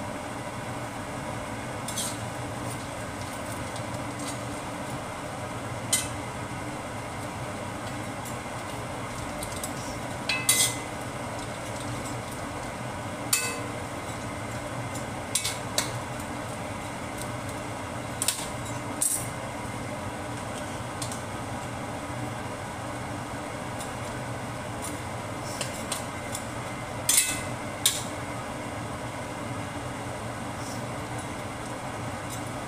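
Metal spatula and spoon clinking and scraping against a stainless steel wok as stir-fried noodles are tossed, in scattered separate strikes, the loudest about ten seconds in and near the end. A steady hum runs underneath.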